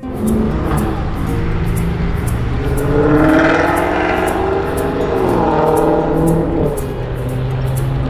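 Road traffic noise: a motor vehicle goes by, its engine note rising and then dropping, loudest about three to four seconds in, over a steady low rumble.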